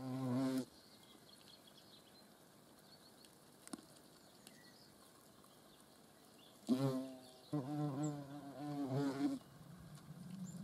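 European hornet wingbeats buzzing close by as hornets fly at the nest entrance: a short buzz at the start, then a louder one about seven seconds in that runs on, wavering slightly, for about two seconds.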